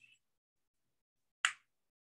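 A single sharp keystroke on a computer keyboard about a second and a half in.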